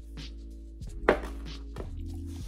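A few short knocks, one sharp and loud about a second in, over background music with sustained notes.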